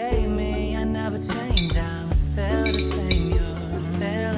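Background music: a song with a singing voice over bass and percussion.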